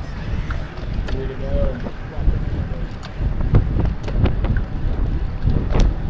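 Wind buffeting the microphone of a bike-mounted camera at race speed, a steady low rumble with road noise. Several sharp clicks break through in the second half.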